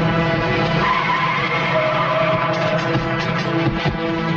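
Film sound effects of a motorcycle skidding on asphalt, with tyre squeal and engine noise, over a continuing background score. In the last second and a half comes a quick series of short, sharp sounds.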